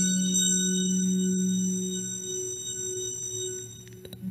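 Organ music holding one sustained chord, which fades away near the end and is cut off by a short click.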